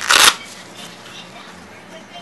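The hook-and-loop flap of a fabric filter pouch ripped open in one short burst, followed by soft rustling as the pouch is unfolded.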